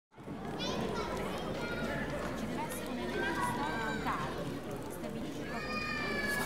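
Outdoor ambience of a paved town square: distant voices and children's calls over a low steady rumble.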